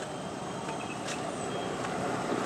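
Small motor scooter approaching along a paved road, its engine and tyre noise a steady hum that grows slowly louder as it nears.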